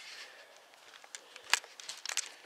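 Handling noise from a handheld camera being swung about and turned round: light rustling with scattered small clicks, one sharper click about one and a half seconds in.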